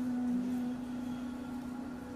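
Background music: one low note held steadily, with faint overtones above it.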